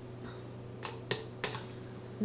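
Three light sharp clicks in quick succession about a second in, a plastic blender cup knocking against a steel cocktail shaker as blackberry puree is tipped onto the ice, over a low steady hum.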